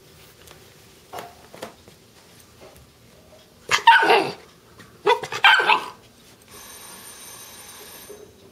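Terrier-mix puppy barking: one bark about halfway through, then a quick cluster of barks a second later. A faint steady hiss follows near the end.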